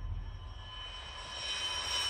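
Sukhoi Su-34's twin turbofan engines running with a faint high whine that slowly falls in pitch, over a steady rushing noise that grows louder toward the end.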